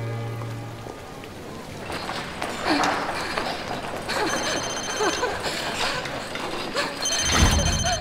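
A telephone rings twice, each ring about a second long and about three seconds apart, over rustling and movement sounds, with a low thump just before the end. A string-music cue fades out in the first second.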